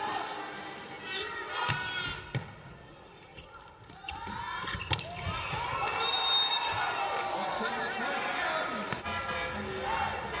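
A volleyball is struck sharply three times, about two seconds in, again just after, and about five seconds in. Arena crowd noise swells into massed shouting and cheering in the second half.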